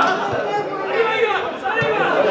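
Several people's voices calling out and talking over one another, with no clear words, during open play at an outdoor football match.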